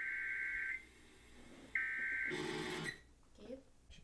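Emergency alert broadcast tones from a TV: two bursts of a harsh, buzzy electronic data tone, the first cutting off under a second in and the second, about half a second long, near the middle.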